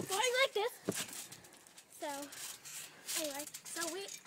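Short wordless vocal sounds from a girl, with a single thump about a second in as she lands on the trampoline mat.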